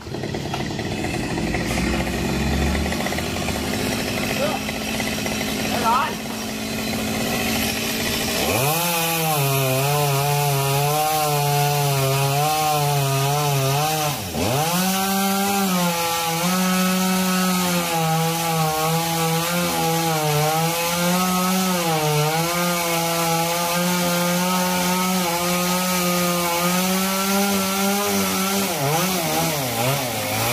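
Gasoline chainsaw cutting through a thick branch of a big sộp fig tree. It comes in about eight seconds in and runs loud under load with a wavering engine note, dropping briefly and revving back up around fourteen seconds.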